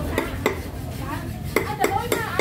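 Several sharp knocks and clinks of hard objects: a couple near the start and two close together near the end, over a steady background hum and faint voices.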